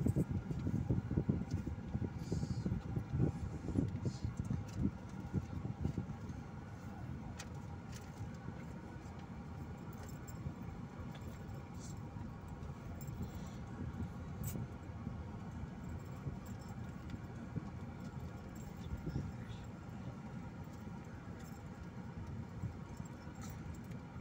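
Car cabin noise while driving slowly: a steady low rumble of engine and tyres, rougher and louder for the first six seconds, with scattered light clicks and rattles.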